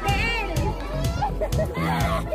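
A group of women laughing and squealing, with a high squeal near the start, over background music.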